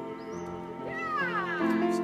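Grand piano playing sustained chords, with a high voice gliding down in pitch from about a second in.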